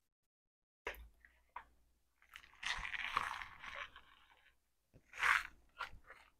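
Crunchy candy being chewed: a couple of separate crunches, then a denser stretch of crunching in the middle, and a louder crunch near the end.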